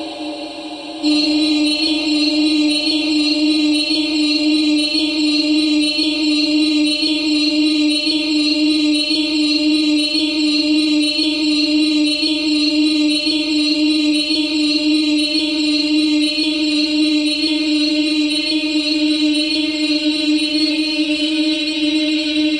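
Electronic soundtrack of a woman's voice cut into tiny looped grains by granular synthesis and held as a loud, steady, chant-like drone on one pitch, with a fast, even flutter running through it. It cuts in abruptly about a second in.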